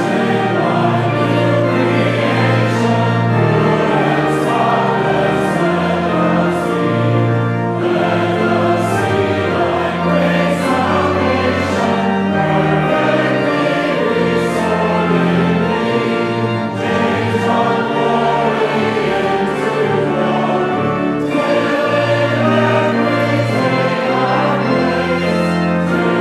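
Congregation and choir singing a hymn together, accompanied by a pipe organ holding long low notes beneath the voices.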